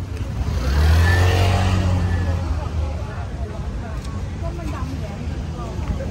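Small motorcycle passing close by, its engine note loudest about a second in and then fading away, with street crowd voices underneath.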